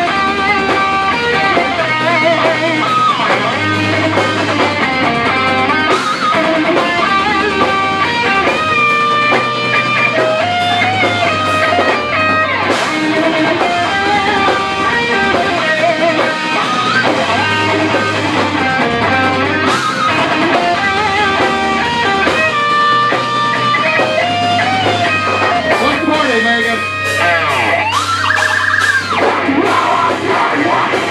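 Live heavy metal band playing loud: distorted electric guitars with melodic lead lines over bass and drums.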